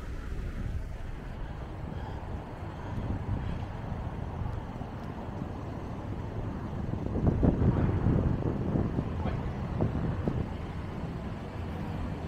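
Street traffic rumble with wind buffeting the microphone, growing louder for a few seconds from about seven seconds in as a vehicle draws close.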